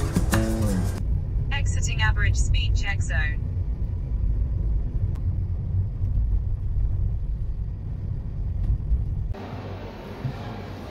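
Steady low rumble of a car's road and engine noise heard from inside the cabin while driving. Guitar background music ends about a second in, and a brief voice is heard around two seconds in.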